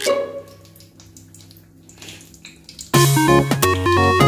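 Upbeat background music with a synth melody. It drops out to a quiet lull just after the start and comes back in about three seconds in.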